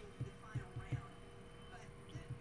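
Fingers tapping on a wooden desk: a few soft, low thuds in the first second, irregularly spaced, over a faint steady hum.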